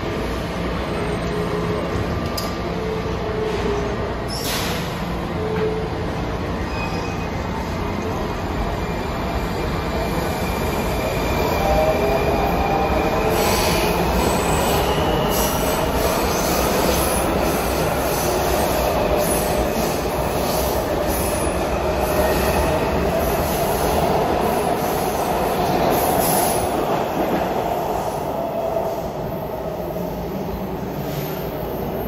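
Washington Metro subway train pulling out of an underground station: a steady low rumble that grows louder about ten seconds in as the cars pass, with wheel squeal and gliding whining tones, easing off near the end as the train leaves.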